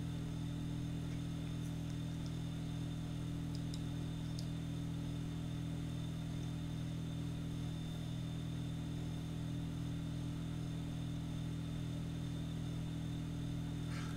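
A steady low hum made of several even tones held together, with a faint hiss above it. There is no speech; it is the background hum of the room or recording setup.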